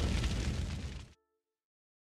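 Rumbling, crackling boom of a fiery title-card sound effect, fading and then cutting off abruptly about a second in, leaving silence.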